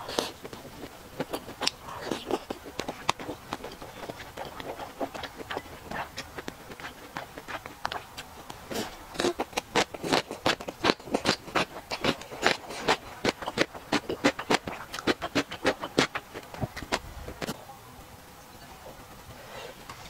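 Close-miked chewing of spicy beef and crunchy gongcai (dried celtuce stems), a long run of crisp crunching clicks that is densest through the middle and thins out near the end.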